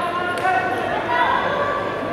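High-pitched shouted calls from spectators or coaches during a standing judo grip fight, held and bending in pitch, echoing in a large hall. A short sharp knock is heard about half a second in.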